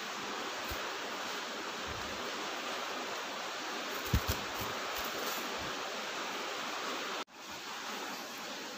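Steady background hiss of room noise, with a couple of faint ticks about four seconds in and a brief dropout near the end.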